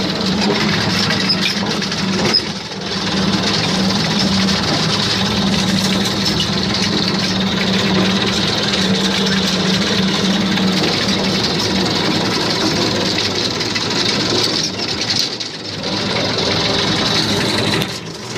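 Old farm tractor's engine running steadily while the tractor drives over a rough dirt track, with a steady low hum and an even clatter over it. The sound dips briefly twice, about two and a half seconds in and again around fifteen seconds.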